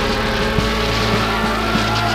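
Sustained electronic drone of held synthesizer tones over a fast, throbbing engine-like low rumble, part of the band's psychedelic soundtrack.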